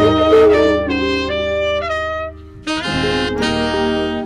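Tenor saxophone and trumpet playing a melody together over a low steady accompaniment: a local Kamba song arranged for horns. The horns break off briefly about two and a half seconds in, then come back in together.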